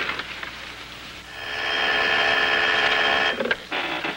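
A telephone ringing once: a single steady, buzzing ring about two seconds long that swells in a second in and stops suddenly.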